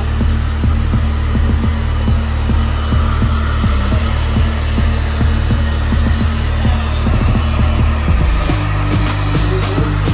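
Handheld hair dryer blowing steadily, a continuous airy rush, under background music with a steady beat and a bass line that shifts near the end.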